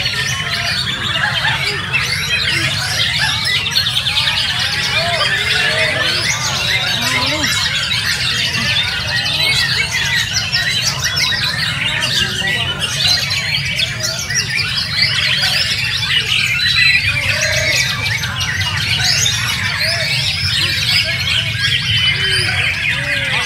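Many caged white-rumped shamas singing at once: a dense, unbroken tangle of overlapping chirps, whistles and rattling phrases, over a steady low hum of crowd noise.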